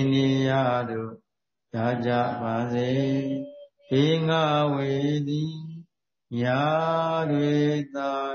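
A man's voice chanting a Buddhist recitation: slow, drawn-out melodic phrases, four in all, with short breath pauses between them.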